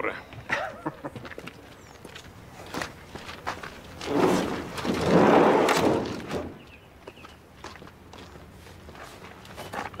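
Footsteps and small knocks, then a van's sliding side door rolled along its track with a loud rushing rumble for about two seconds, midway through.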